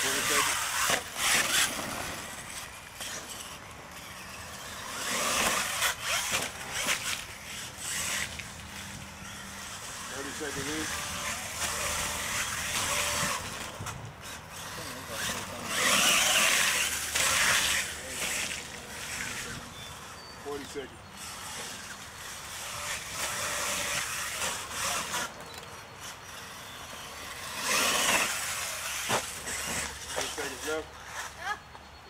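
Radio-controlled monster truck driving through mud, its motor revving up in surges as it churns across the pit, loudest about five, sixteen and twenty-eight seconds in. Onlookers' voices are faint underneath.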